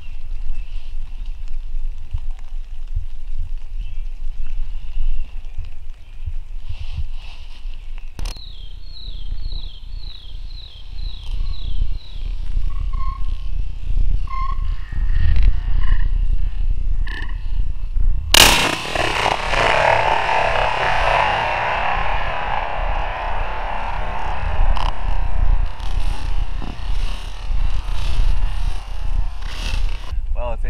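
Wind rumbling on the microphone, with a bird's run of short falling chirps from about eight to twelve seconds in. About eighteen seconds in there is a sharp bang, and music plays from then to the end.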